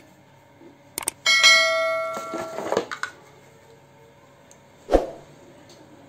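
Subscribe-button sound effect: two quick mouse clicks, then a bell chime that rings out and fades over about a second and a half. A single sharp knock follows about five seconds in.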